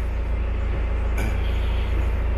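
BMW 420d's four-cylinder diesel engine idling steadily with a low rumble. About a second in, a brief hiss of noise comes in over it.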